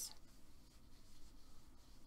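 Faint scratchy rubbing of yarn drawn over and through a crochet hook while double crochet stitches are worked.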